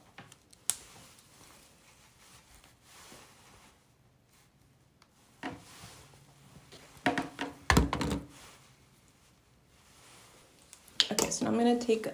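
Quiet room with soft handling sounds of hair being curled, a single thunk about two-thirds in, and a woman's voice briefly then and again near the end.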